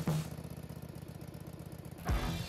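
Small Kohler Command PRO 19 horsepower engine on a log loader, running at idle with a steady, even pulse.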